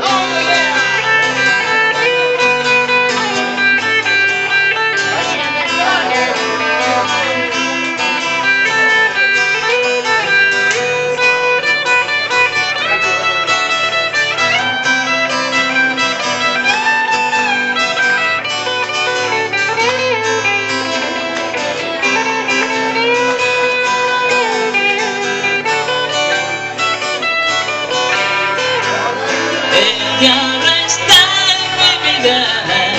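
Two guitars playing an instrumental break: an electric guitar and an acoustic guitar, with a lead line full of bent notes sliding up and down over the chords.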